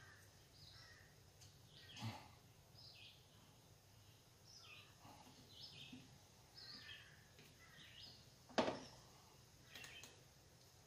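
Near silence, with faint bird chirps in the background. Two clicks, a soft one about two seconds in and a sharper one near the end, come from hands pushing a fuel line onto the outboard's fuel filter fitting.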